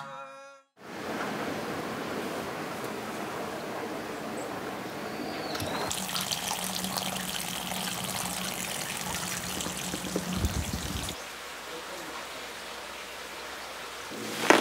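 Water running steadily from an outdoor tap into a stone basin, a continuous trickling splash that grows brighter about six seconds in and quieter near the end.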